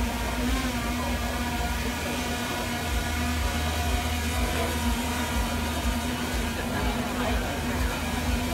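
Intel Falcon 8+ octocopter hovering, its eight propellers giving a steady, even hum with a low held tone and fainter higher tones above it.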